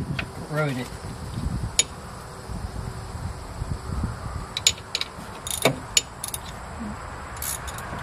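Metal tool clinking and clicking against a terminal nut on a golf cart motor as the nut is tightened: a scattering of sharp clicks, loudest in a cluster a little past the middle and again near the end.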